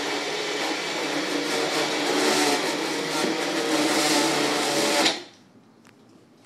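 Bullet-style personal blender running steadily while blending a protein shake, then cutting off abruptly about five seconds in.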